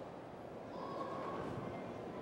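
Low, steady room noise of a large hall, with faint indistinct voices and a faint brief tone about a second in.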